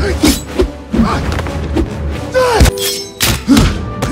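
Film fight sound effects: a fast run of heavy hits, thuds and blocks as two fighters trade blows hand to hand, one using a staff, over film score music.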